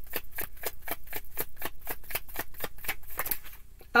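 Tarot deck being shuffled overhand: an even run of crisp card slaps, about seven a second. The run stops shortly before the end as cards fly out of the deck onto the table.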